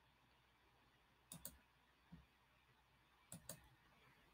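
Faint computer mouse clicks in near silence: a pair about a second and a half in, a single soft click around two seconds, and another pair near the end, as faces are picked in CAD software.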